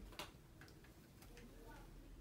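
Near silence: room tone with a few faint, light ticks and taps, as of small makeup items being handled.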